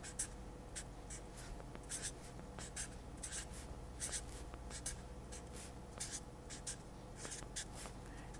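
Permanent felt-tip marker writing on paper: a faint run of short, scratchy strokes, a few each second, as letters and symbols are drawn.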